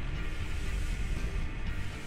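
Background music playing steadily.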